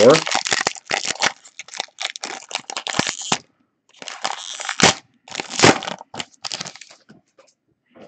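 Foil wrapper of a 2013 Panini Momentum football card pack being torn open and crinkled: a dense crackle for about three and a half seconds, then after a short pause a second run of crinkling with two sharper cracks, dying away about seven seconds in.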